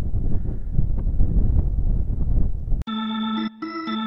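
Wind rumbling on the microphone, cut off abruptly near the end by background music of held organ-like keyboard chords, which drops out for a moment and comes back.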